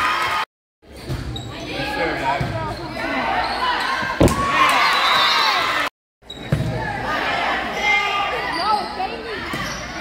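Players and spectators calling and shouting in a gymnasium during a volleyball rally, with one sharp smack of the volleyball being hit about four seconds in. The sound cuts out completely for a moment twice, near the start and about six seconds in.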